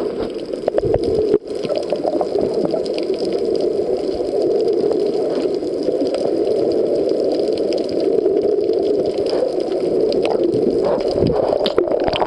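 Water rushing past a camera recording underwater: a steady, muffled rush with scattered faint clicks.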